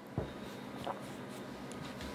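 Quiet room tone with faint handling sounds: a soft thump about a fifth of a second in, then a few light ticks and rustles from a hand holding a smartphone.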